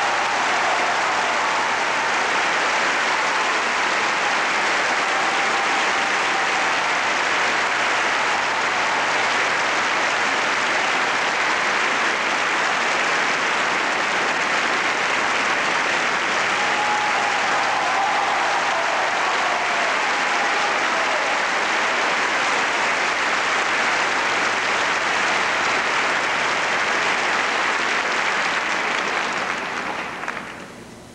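Large theatre audience applauding steadily, the clapping dying away near the end.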